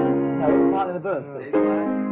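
Piano chords being worked out at a songwriting session: one held chord rings and fades, then a new chord is struck near the end. About a second in, a man's voice slides down in pitch with no words.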